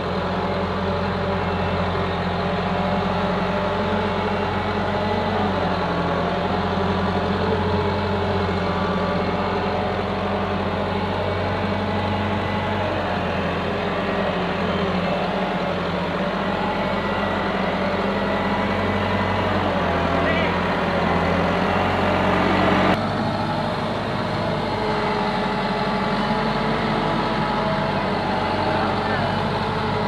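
Massey Ferguson 385 tractor's diesel engine running steadily as it pulls a heavily overloaded sugarcane trolley, with an abrupt change in the engine sound about three-quarters of the way through.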